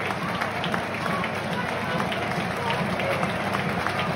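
Football crowd in a stadium: many voices mixed together, with scattered hand claps close by.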